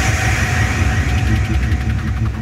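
Hard electronic dance music in a DJ mix: a heavy, rumbling bass pulsing under a dense, noisy wash, with a fast rhythmic pattern coming in about a second in.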